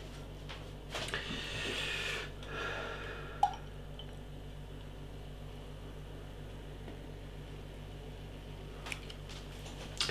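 Beer being poured from a can into a glass: a short pour from about a second in to just past two seconds, with one sharp click about three and a half seconds in. A low steady hum runs underneath.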